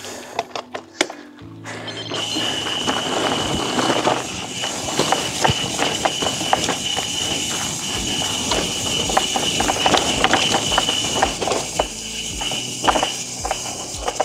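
Mountain bike running fast downhill on a grassy dirt track, heard through a wireless clip-on mic on the rider: a rush of wind and tyre noise with many small rattles and clicks and a steady high whine, building about two seconds in and easing near the end. Background music plays underneath.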